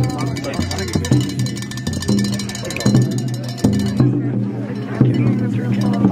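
Low men's voices singing an Apache ceremonial song in long held notes that step from pitch to pitch, with a few sharp knocks.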